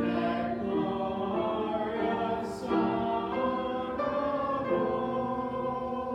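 A church congregation singing a Christmas carol together, with held notes that change every second or so.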